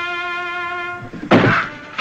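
A held brass note of band music ends about a second in. Then comes a sudden loud thump with a short rough burst after it.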